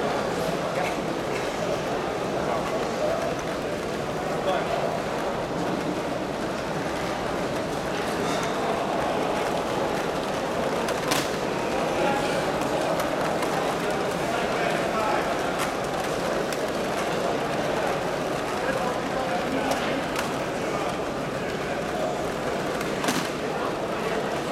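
Steady chatter of many people talking at once in a large hall, with no single voice standing out. Two sharp clicks cut through it, one about eleven seconds in and one near the end.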